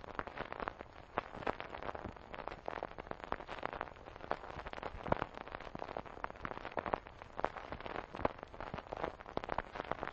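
Dense, irregular crackling with scattered sharper pops, like the surface noise of an old record, with no music.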